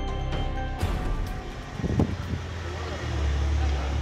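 A short musical logo jingle ends under a second in, giving way to outdoor street noise: a steady low engine rumble, with a brief voice about two seconds in.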